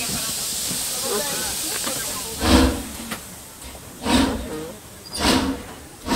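Steady hiss for about two seconds, then three loud, heavy breaths from a man close to the microphone, roughly one every second and a half.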